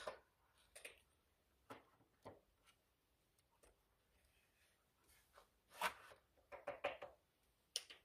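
Near silence with a few faint taps and rustles of hands handling paper and small craft items on a tabletop. Most of them fall in a short cluster near the end.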